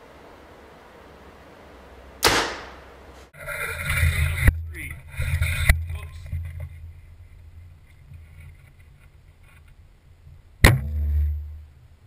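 A 2012 PSE Vendetta DC compound bow is shot, with a sharp crack and a short ringing decay about two seconds in. Thumps and handling noise follow, and near the end comes a second sharp crack with a low thud that dies away.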